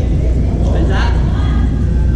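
Gymnasium hall ambience: a steady low rumble under indistinct voices of players, with a brief brighter sound about a second in.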